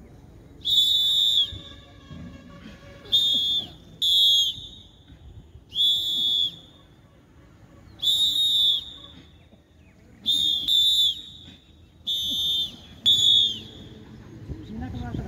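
A trilling pea whistle blown in a series of short blasts, about nine in all, some single and some in quick pairs.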